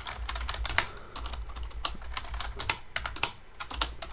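Computer keyboard being typed on: a run of irregular, quick keystroke clicks as a command is entered, over a low hum.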